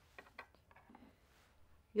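A few faint plastic clicks and taps from handling a power supply brick and its plug adapter, most of them in the first half second.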